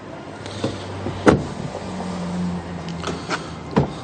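Power window motor of a Volkswagen Passat wagon running, a steady hum with a sharp click about a second in. A few lighter knocks follow near the end.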